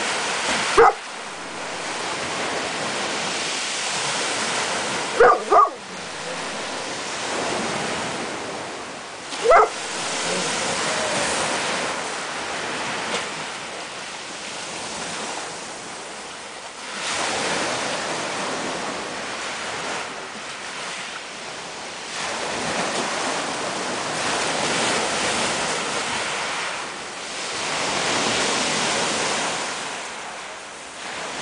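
Surf washing in and out over a pebble shore, swelling and falling every few seconds. It is broken by four short, sharp high calls: one about a second in, two close together near five seconds, and one near ten seconds.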